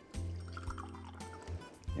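Water poured from a glass pitcher into a glass mug, faint under steady background music.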